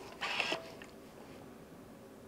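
A steam iron pressed down on fabric on a pressing mat, with one short burst of noise about a quarter second in.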